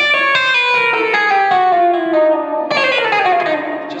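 Electric guitar played with tapping: a run of single notes stepping down in pitch, then, near the three-second mark, a second run that starts higher and steps down again.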